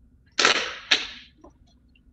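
Two loud, sudden bursts of noise about half a second apart, the first a little longer, loud enough to be remarked on.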